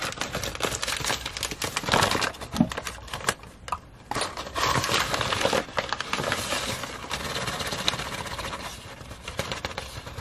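Plastic flour bag crinkling and rustling as a hand and plastic measuring scoop dig into the flour, with many small clicks and scrapes and a brief lull near the middle.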